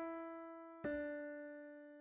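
Pianoteq virtual Steinway D piano playing single notes of a quarter-tone scale. A note struck just before the start fades away, then a slightly lower note is struck a little under a second in and rings as it decays.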